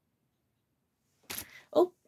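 Near silence, then, about a second and a quarter in, a short sharp knock as a hand bumps against the doll, followed at once by a woman's startled "Oh".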